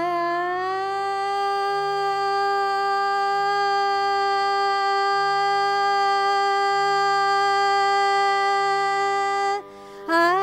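Female Carnatic vocalist holding one long, steady note for about nine seconds after a slight upward glide into it, then breaking off just before the end, over a tanpura drone.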